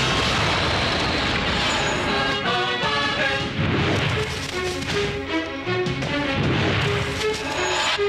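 Dramatic action-film background score, with loud whooshing noise sweeps and booming hits laid over the music.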